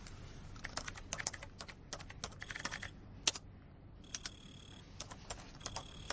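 Laptop keyboard being typed on: quick, irregular key clicks, thickest in the first three seconds. In the second half the clicks thin out and a thin, steady high tone comes and goes beneath them.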